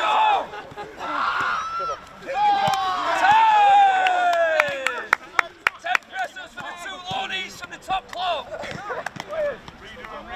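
Footballers' voices shouting and laughing on an outdoor training pitch, with one long call falling in pitch from about two and a half seconds in. It is followed by a quick run of sharp knocks over the next few seconds.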